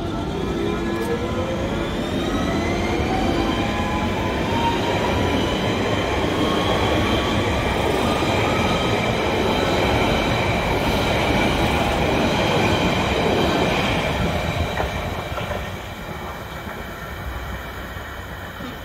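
London Underground Central Line 1992 stock train accelerating away, its traction motors whining in several rising tones over wheel-on-rail rumble. The sound is loudest about three quarters of the way through, then drops off as the train recedes.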